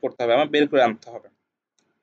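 A man speaking for about a second, then the sound cuts off to silence.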